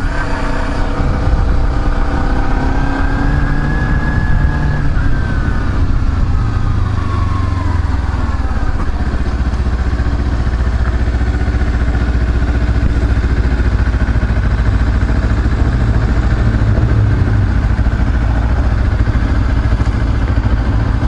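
Kawasaki Ninja 250R's parallel-twin engine running as the bike rides and slows, its note rising and then falling over the first half. Through the second half it settles into a steady low idle.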